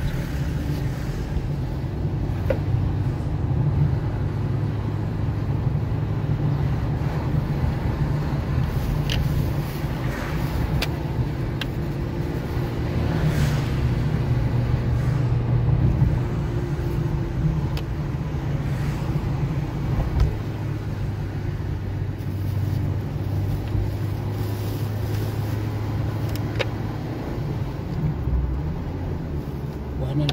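Steady low rumble of a car's engine and tyres heard from inside the moving car, with a few faint ticks.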